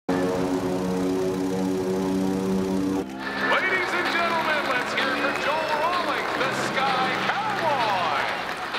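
Small aerobatic propeller plane's engine droning steadily; about three seconds in, a crowd cheers, whoops and whistles over the fainter engine drone.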